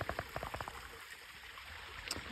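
Faint outdoor background hiss, with a quick run of soft clicks in the first second.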